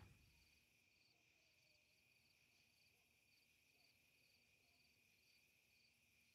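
Near silence with faint cricket chirping, about two chirps a second, over a faint steady high hum.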